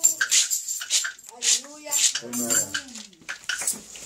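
Tambourine jingles keep up a beat of about two to three strikes a second after the backing music cuts off at the start. A voice calls out twice, each call rising and falling, a little after one second and again around two seconds in.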